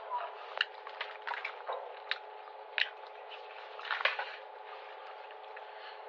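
Scattered clicks and crackles over a faint steady hiss and hum: a headset microphone being rubbed and handled near the mouth to fake a bad phone connection.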